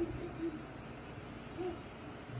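A baby's short, soft hooting vocal sounds, three of them: one at the start, one half a second later and one near the end.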